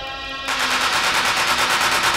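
Acid techno in a break: the kick drum has dropped out and a held synth tone sounds briefly, then about half a second in a fast, dense roll of noisy drum hits starts and keeps going.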